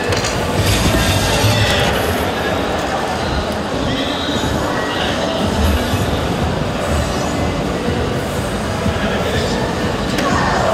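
Steady din of a crowded exhibition hall full of electronic dart machines, with no single sound standing out.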